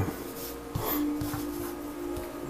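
Soft background music with long held notes, and under it the faint rub of a tarot card being slid across a cloth-covered table.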